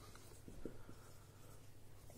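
Felt-tip marker writing on a whiteboard: faint scratching strokes of the tip as the words are written.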